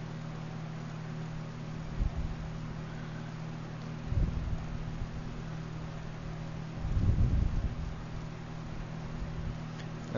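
Steady low hum and hiss from a running computer picked up by a desk microphone, with a few brief low bumps about two, four and seven seconds in.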